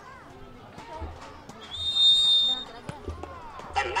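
Referee's whistle: one steady, high, shrill blast about a second long, a couple of seconds in, signalling a free kick to restart play.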